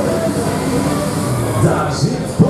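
Pendulum thrill ride in full swing: a steady mechanical rumble from the arm and gondola moving through the air, with riders' voices rising near the end.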